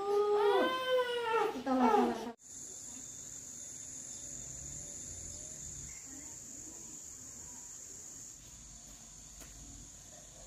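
A baby crying in wavering wails for about two seconds, cut off suddenly; then a steady high-pitched insect drone, like crickets, over faint outdoor background.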